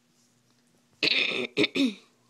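A woman coughing into her cupped hands: one longer cough about a second in, then two short ones close together.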